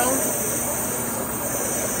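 OMAX ProtoMax abrasive waterjet cutting steel plate: a steady, even hiss from the high-pressure jet.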